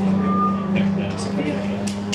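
A vehicle engine running steadily with an even, low drone, and a short high beep about half a second in.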